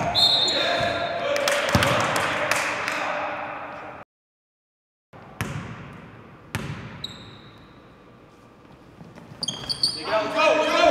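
Basketball practice in a reverberant gym: a ball bouncing on the hardwood floor among players' voices and short sneaker squeaks, then a second of dead silence about four seconds in. After it come two single ball bounces about a second apart, each echoing around the gym.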